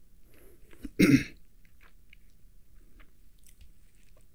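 A man clears his throat once, briefly, about a second in. Faint mouth clicks and breaths come before and after it.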